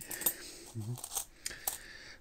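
Loose metal coins clinking together on a table as a gloved hand sets one down and picks through the pile: a few light, separate clicks.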